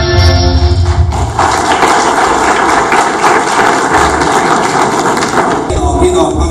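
A national anthem ends about a second in, then a room full of people applauds, the clapping stopping just before the end.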